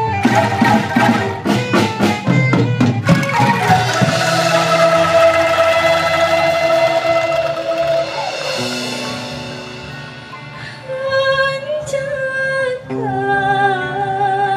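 Live angklung ensemble with gambang (bamboo xylophones) and drums playing a quick rhythmic passage. About four seconds in it stops on a held chord that slowly fades. A woman's voice starts singing in the last few seconds.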